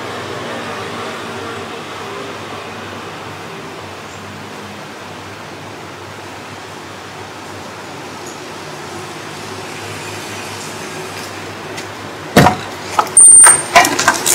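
A steady low drone with faint held tones, then about twelve seconds in a sudden loud bang followed by a burst of loud noise.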